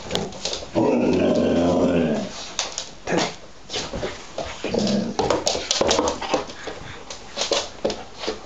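Alaskan malamute 'talking': one long, wavering moan about a second in, then shorter grumbling calls about halfway through, the dog asking to be let out. Sharp clicks run through it.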